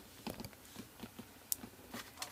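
A handful of faint, scattered clicks and taps of plastic computer mice being handled and set down on a wooden desk.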